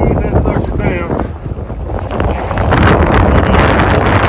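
Wind buffeting the microphone in a steady low rumble, with a louder, hissing rush building from about halfway in.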